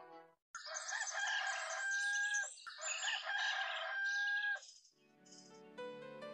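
Rooster crowing twice, each crow about two seconds long and ending in a held high note that drops away.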